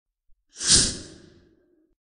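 A single sigh from a person into the microphone: one breathy exhale beginning about half a second in and fading away within a second.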